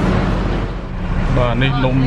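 Minibus engine idling, a steady low hum mixed with street noise, with a person talking over it in the second half.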